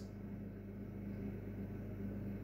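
Faint steady low hum of room tone, with no other event.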